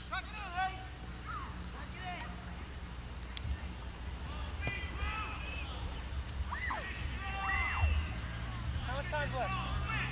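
Faint, distant voices of soccer players shouting and calling across the field in short scattered calls, over a low steady hum.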